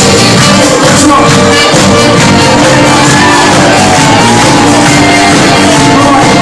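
Live function band playing a song loudly and steadily.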